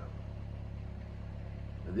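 A steady low hum with no change in pitch or level, and a man's voice begins right at the end.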